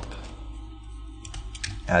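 A few faint, short clicks from working at a computer over a low steady hum. Speech starts at the very end.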